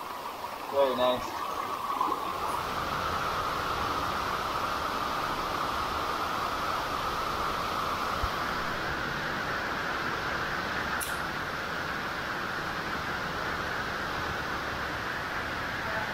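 A river rushing steadily through a narrow rock canyon, an even hiss of flowing water.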